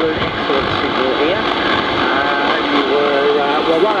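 A 160-metre AM transceiver's loudspeaker giving out steady band noise and static. About two seconds in, a station's voice comes through the noise.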